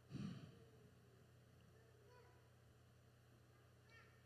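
A short breath out, picked up by the microphone just after the start, then near silence over a steady low hum.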